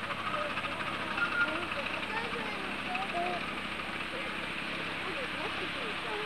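Distant people's voices chatting in the background over a steady hiss.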